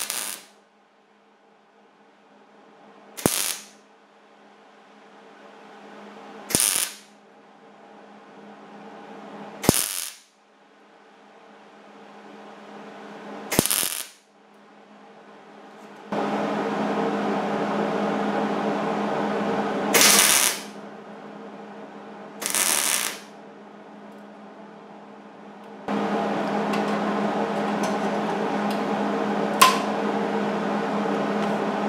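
Welder tack-welding thin sheet steel: about seven short arc bursts a few seconds apart. A steady machine hum runs underneath and becomes much louder for a few seconds in the middle and again near the end.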